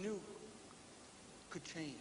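A man's voice trailing off at the end of a sentence, then a short pause with only a faint steady hiss before his speech resumes near the end.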